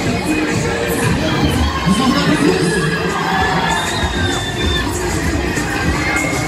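Riders shouting and screaming on a spinning Break Dance fairground ride. Several high shrieks rise and fall over a constant crowd din.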